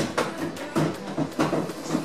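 Cleaned tumble dryer parts being handled and fitted back into the machine: a run of light knocks and clatters, a few each second.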